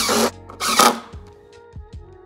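Cordless Makita impact driver driving a screw into wood blocking in two short bursts about half a second apart, followed by background music.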